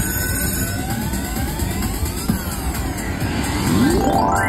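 IGT Hot Hit Pepper Pays slot machine playing its pick-bonus award sound: electronic tones sweeping up and down, then a fast rising sweep near the end, as the bonus is awarded.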